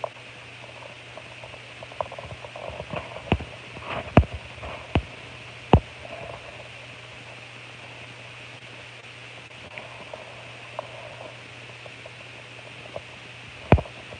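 Steady low hiss and hum of background noise, with a few short sharp clicks or taps between about three and six seconds in.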